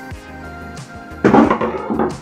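Background music throughout, with a loud clatter a little over a second in as the DVR recorder's metal case is lifted off the desk and the screwdriver is put down.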